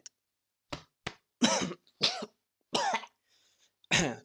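A man coughing, about six short coughs in a row with brief pauses between them, close to the microphone.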